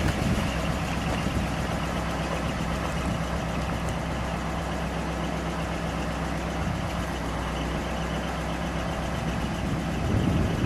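1959 Ford Fairlane 500 Galaxie Skyliner's 332 cubic-inch V8 idling steadily.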